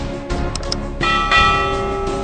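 Background music with two quick clicks, then a bell chime that rings on and slowly fades: the sound effect of a subscribe animation's notification bell.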